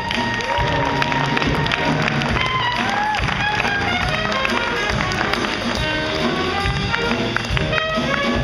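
Small jazz combo playing live: a horn melody line with bending, scooped notes over piano and drum kit.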